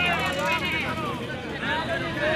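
Spectators' voices talking and calling out over one another, with a steady low hum underneath.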